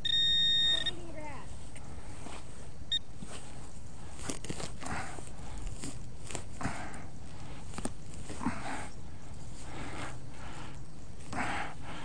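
Metal detector beeping: a steady electronic tone for about a second, then a short blip about three seconds in, over faint handling and scraping sounds.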